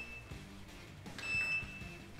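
OASIS gas boiler's electronic control panel beeping as the boiler is switched on: a short high beep that ends just after the start, then a second, half-second beep at the same pitch about a second later.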